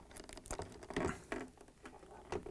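Irregular small clicks and taps of plastic hinges on a Samsung refrigerator flapper door being fitted onto the French door's hinge holders, with a couple of louder knocks about half a second and a second in.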